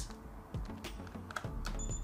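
Small plastic clicks and scrapes of a Yongnuo wireless flash transceiver's foot being slid into the hot shoe on top of a Godox X2T flash trigger, over quiet background music.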